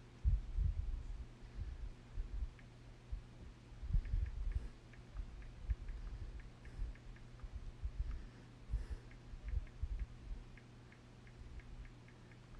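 Irregular low bumps and rumbles of a handheld recording device being handled, over a steady low hum, with faint light ticks, several a second, from a few seconds in.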